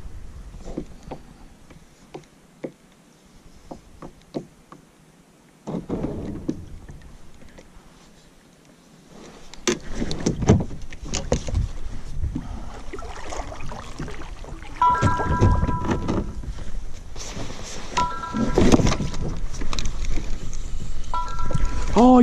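Kayak paddling: paddle strokes with water noise and knocks against the plastic hull. From about 15 s a mobile phone rings in three short two-note bursts, about three seconds apart.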